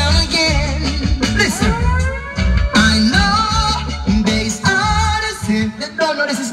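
A song with a lead singer, played loud over a sound system with heavy bass.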